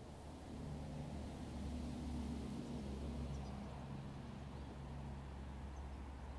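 Ford Escort RS Turbo Series 1's turbocharged 1.6-litre four-cylinder engine running at a steady idle shortly after a cold start, heard from under the car. It is a low, even hum that grows a little louder in the first couple of seconds and then eases back slightly.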